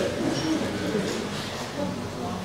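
A man's quiet, low-pitched chuckle.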